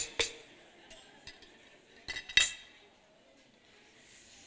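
A hand blender and kitchen things on a table being handled and set down: a few scattered light clinks and knocks, the loudest pair about two seconds in. The blender motor is not running.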